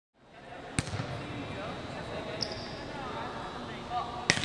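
A ball bouncing once, sharply, on a gym floor about a second in, echoing through a large hall, over a steady background of voices. A brief high squeak comes midway.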